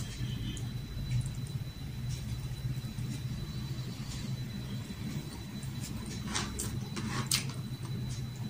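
Eating sounds: a person chewing food, with a few short wet mouth smacks about six to seven and a half seconds in, over a steady low hum.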